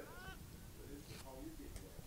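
Faint distant voices across the cricket ground, with a short call that rises and falls just after the start and more faint voices about a second in.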